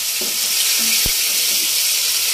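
Hot oil sizzling steadily in a cooking pan as food fries.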